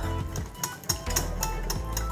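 Background music with a steady bass, over the quick clicking and scraping of a wire whisk beating a thick chocolate mixture against the sides of a glass bowl.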